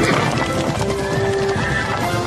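Horses galloping, hooves clattering on cobblestones, over background music.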